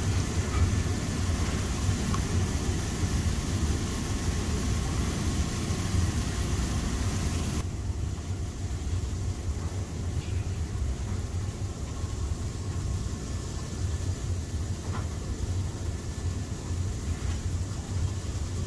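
Jacuzzi jets running: a steady churning of bubbling water over a low pump rumble. About eight seconds in, the hiss of the water suddenly softens, leaving mostly the low rumble.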